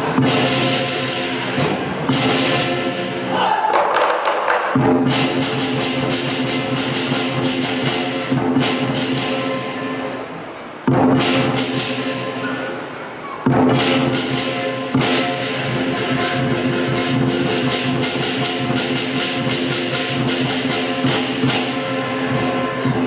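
Lion dance percussion band: a big drum played in a fast, driving rhythm with clashing cymbals and a ringing gong. About halfway through the beat drops away briefly, then comes back in hard.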